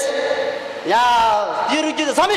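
A monk debater's voice calling out in Tibetan, with one long drawn-out syllable about a second in: speech only.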